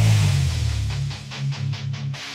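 Heavy rock song in a sparse break: low guitar notes ring on without drums.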